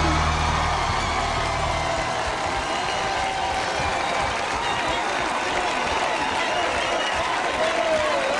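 Studio audience applauding and cheering at the end of a song, with a few shouting voices, while the last sustained chord of the accompaniment dies away in the first couple of seconds.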